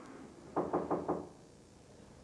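A quick run of about five knocks, as on a wooden door, a little over half a second long and starting about half a second in.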